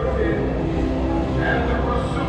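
Exhibit soundtrack playing over loudspeakers: a steady low rumble under held musical tones, between lines of recorded narration.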